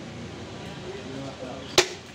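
A single sharp chop near the end: a butcher's cleaver cutting through beef into a wooden log chopping block.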